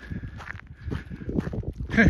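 Footsteps of a person walking, a series of irregular soft thuds, with a louder knock near the end. A faint steady high tone runs behind.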